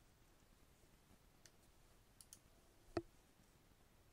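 Faint clicking at a computer over near silence: a few soft clicks, then one sharper click about three seconds in.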